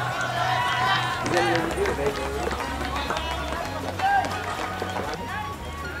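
Voices talking and calling out over background music with a steady bass line.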